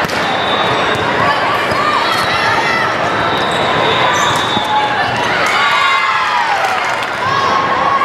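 Indoor volleyball rally in a large, echoing gym: sharp knocks of the ball being played over a steady bed of crowd chatter, with players' short shouted calls.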